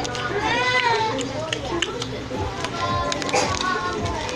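A young girl's voice close to the microphone, drawn out without clear words, its pitch rising and falling, with music in the background.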